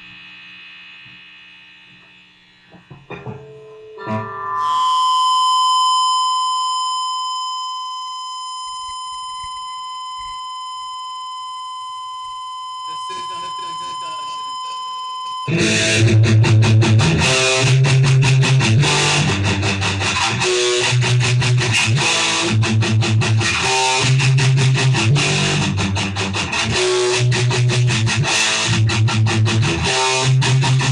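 Anarcho-punk band recording: a long, steady high tone holds for about ten seconds. Then, about fifteen seconds in, the full band comes in loud with distorted electric guitar, bass and drums in a driving rhythm.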